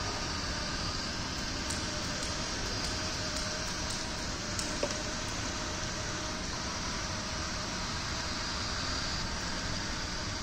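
Steady running of a small robot boat's electric-motor-driven paddle rollers churning the water, with a faint whine over the noise and one small click about halfway through.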